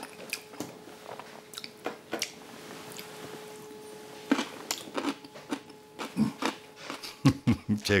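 A man chewing a bite of tonkatsu topped with kkakdugi (cubed radish kimchi), with short crisp crunching clicks that come thicker from about four seconds in. A short laugh comes near the end.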